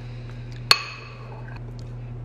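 A single sharp clink with a short ring, about two-thirds of a second in: a spoon knocking against a ramekin as diced apples are spooned in. A low steady hum runs underneath.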